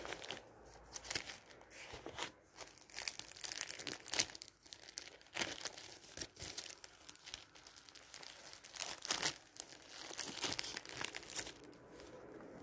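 A thin, clear plastic sleeve crinkling and crackling as hands handle it over glossy paper magazines, with the paper rustling too; the crackles come irregularly throughout.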